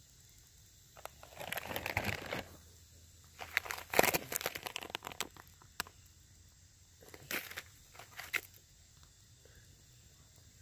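Packaged food pouches crinkling as they are handled, in three bouts: about a second in, from about three and a half to six seconds in, and again around seven to eight seconds in.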